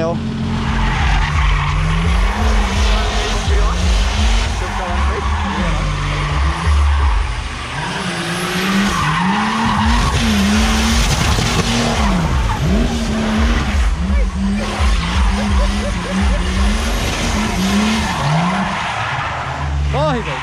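A car drifting: the engine revs up and drops back over and over, roughly once a second, under continuous tyre squeal and skidding.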